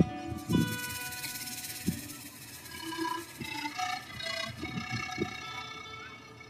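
Live pan flute, acoustic guitar and drum kit music in a quieter passage: a cymbal rings out after a hit at the start, the pan flute plays a few held notes around the middle, and light drum taps and guitar sound under it.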